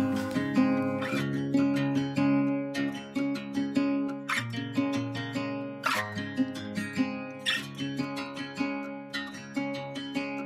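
Background music on acoustic guitar: a steady run of plucked and strummed notes.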